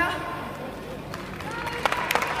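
Concert audience starting to applaud at the end of a live rock song: a voice trails off at the start, then scattered hand claps begin about a second in and thicken toward the end.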